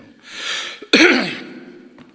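A man clearing his throat: a noisy breath in, then one sharp, loud cough about a second in that trails off.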